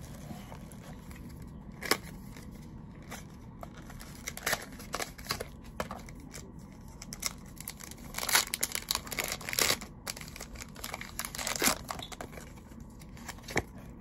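Foil Pokémon TCG booster pack wrapper being crinkled and torn open by hand, in irregular sharp crackles that are busiest a little over halfway through.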